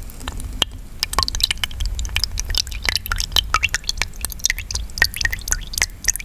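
Two spoons stirring and scooping thick mung bean porridge in a bowl, close to the microphone: a quick run of wet squelches and dripping clicks that thickens about a second in.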